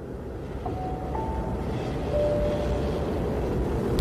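A low, steady rumbling drone from the music video's soundtrack after the song has ended, slowly growing louder, with three faint short held tones over it: two about a second in and a lower one around the middle.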